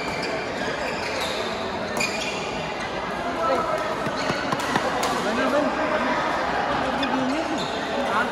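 Badminton rackets striking shuttlecocks, a few sharp hits, with gliding squeaks of court shoes on the floor, in an echoing hall full of players' voices.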